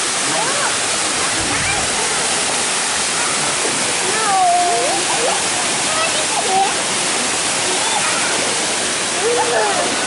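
Steady rushing of a waterfall pouring down a rock face, with voices of people calling out and chattering over it.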